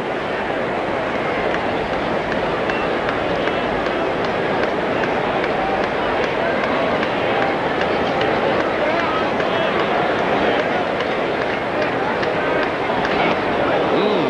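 Large stadium crowd: a steady din of many voices, getting slightly louder as it goes.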